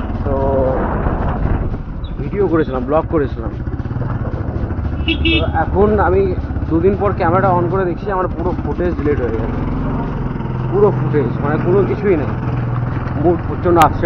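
A motorcycle engine running steadily on the move, with road noise, under voices talking throughout; a single sharp click comes near the end.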